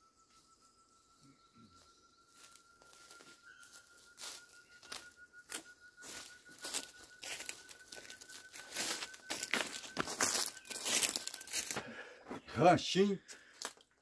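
Irregular crunching and crackling of footsteps through dry leaves, starting faint and growing louder and denser. A faint thin whistle-like tone runs underneath and slowly rises in pitch.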